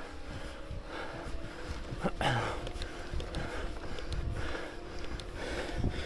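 A cyclist breathing hard in irregular puffs at the top of a steep climb, with a low rumble of wind and road noise on the microphone.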